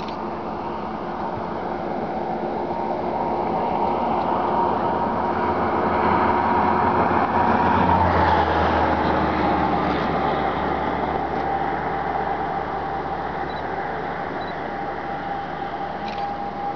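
A motor vehicle passing by: engine and road noise swell to a peak about halfway and then fade, the engine note dropping slightly in pitch after the peak.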